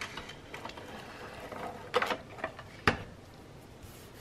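Scotch ATG tape gun dispensing adhesive onto paper, a faint mechanical rasp of its spools turning, followed by two sharp knocks about a second apart, the second the louder.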